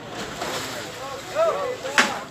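Brief talking voices over a rushing hiss, with a sharp click at the very end.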